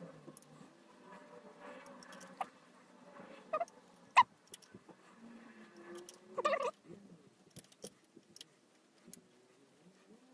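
Faint clicks and taps of small plastic parts, screws and wiring being handled while the parts-cooling blower fan is fitted to a 3D printer's print head. The sharpest click comes about four seconds in, a short rattling cluster around six and a half seconds, with faint wavering low tones underneath.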